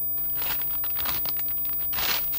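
Crinkling and crunching of someone eating noisily, a run of irregular crackles starting about half a second in and getting loudest at the end, over the steady hiss of a television showing static.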